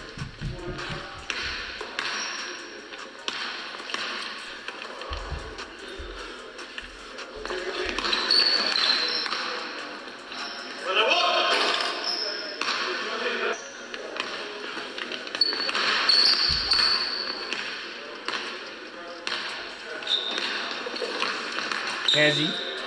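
Basketball dribbled on a hardwood gym court: single bounces near the start and a run of about half a dozen bounces five to seven seconds in, with voices and music running underneath.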